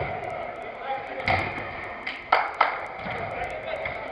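Football being struck in five-a-side play: three sharp thuds, one about a second in and two close together past the middle, over players' indistinct shouts and talk.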